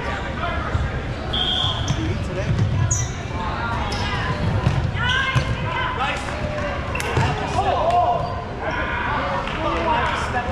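Dodgeballs being thrown and smacking against the hard gym floor and players in a series of sharp knocks. Players are shouting over them, and the whole hall echoes.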